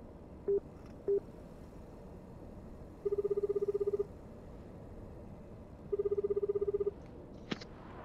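A phone call being placed: three short beeps as the number is entered, then a Japanese-style ringback tone, a rapidly warbling tone sounding for a second, twice, with a pause of about two seconds between. A small click comes near the end as the line connects.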